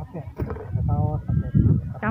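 Indistinct voices of people talking and calling out, with short pitched calls through the middle.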